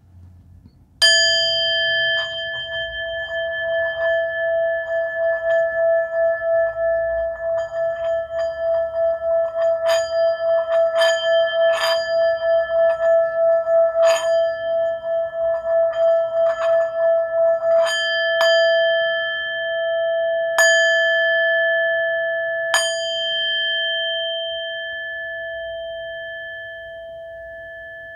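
Handheld metal singing bowl struck once with a mallet, then rubbed around the rim so its tone sings on in a steady pulsing ring, with light clicks of the mallet against the rim. The rubbing stops partway through, the bowl is struck three more times, and its ring fades slowly toward the end; it is loud.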